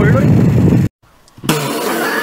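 Heavy wind rumble on the microphone under a man's voice, which stops abruptly just under a second in. After about half a second of near silence, another man starts talking over a steady low hum.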